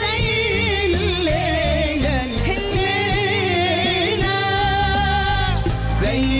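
A male singer sings an ornamented, wavering vocal line over a live orchestra of strings and keyboards.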